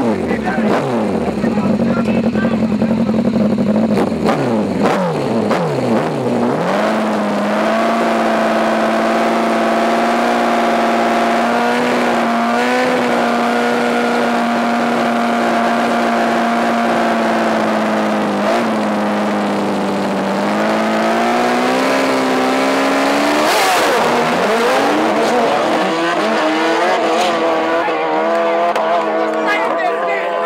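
Drag-racing sport motorcycle engines on the start line: revs rise and fall for the first few seconds, then are held at a steady high pitch for about fifteen seconds. About three-quarters of the way through, the revs climb sharply, with a short burst of noise, and the engine sound changes.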